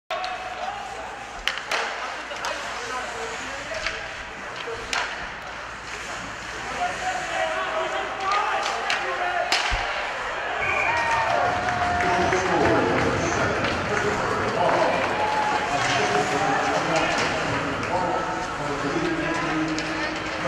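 Ice hockey play at a rink: sharp knocks and clacks of sticks, puck and boards, then from about ten seconds in many voices shouting and cheering as a goal is scored.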